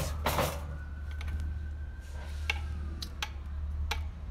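A metal string-action gauge handled against the strings over an electric guitar's fretboard to measure action at the 12th fret: a brief rustle of handling just after the start, then a few light, separate clicks of metal on strings.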